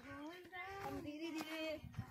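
A young girl's voice singing in drawn-out, held notes that slide between pitches.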